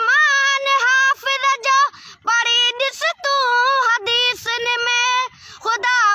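A boy singing a Sindhi devotional song unaccompanied, drawing out long notes whose pitch bends and wavers, with short breaks for breath about two, four and five seconds in.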